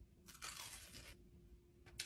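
Faint crunch about half a second in, from teeth biting through the crispy breadcrumb crust of a deep-fried lemper, an Indonesian glutinous rice roll.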